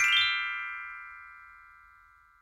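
Short intro music sting: a held chord of several high notes ringing out after a quick rising run, fading away steadily over about two seconds.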